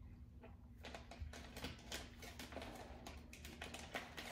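Several people chewing mouthfuls of small packaged cookies: a run of faint, irregular crunching clicks that starts about a second in.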